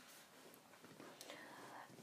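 Near silence: room tone in a pause between spoken phrases, with a faint soft hiss in the second half.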